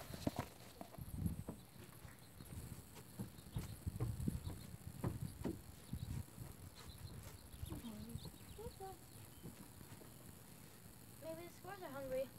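A knock of the phone being handled and set in place, then scattered light knocks and taps through the first half. Faint, quiet talking comes in during the second half.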